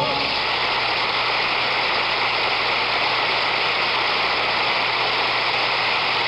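Studio audience applauding: a steady wash of clapping that takes over as the song's final note cuts off at the start.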